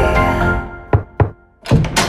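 Background music fades out, then two sharp knocks about a quarter of a second apart, a short pause, and a quick flurry of further knocks near the end as a logo sound sting begins.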